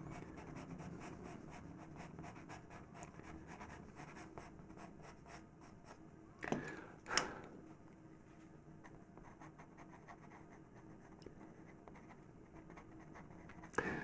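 Faber-Castell pastel pencil working short strokes on PastelMat paper: a faint, quick scratching that dies away about five seconds in. Two brief louder sounds follow about six and seven seconds in.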